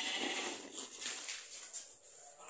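Paper feed sack rustling as a plastic cup scoops dry concentrated sheep feed out of it, an irregular scraping rustle.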